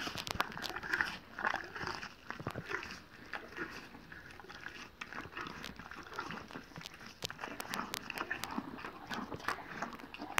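A young pony biting and crunching apple pieces taken from a hand, with many sharp, irregular crunches and chewing sounds.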